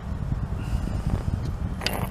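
Uneven low outdoor rumble, with a brief sharp click near the end as the capacitance meter's test leads are handled.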